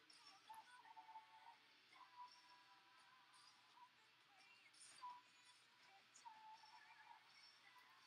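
Near silence: quiet room tone with a few faint, brief high tones.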